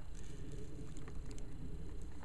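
A low, steady background rumble with no distinct event, in a pause between speech.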